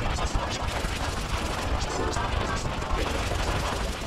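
Harsh, heavily distorted, effects-processed audio: a dense wall of rapid crackling and rattling over a fast low pulsing rumble.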